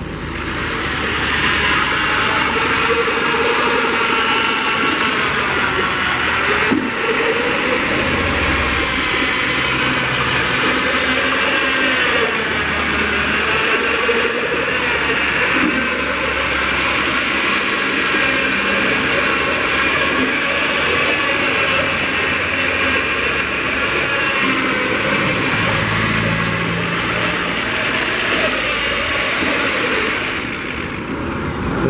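Handheld electric paint mixer (220 V) running steadily with its spiral paddle stirring paint in a metal can. Its motor whine wavers a little in pitch throughout.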